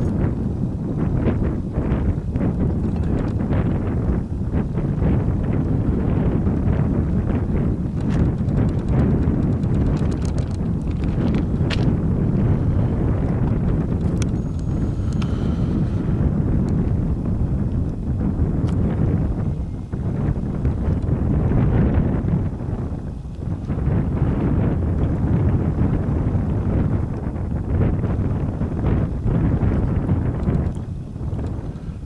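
Wind buffeting the microphone: a loud, uneven low rumble that swells and dips, with a few faint clicks near the middle.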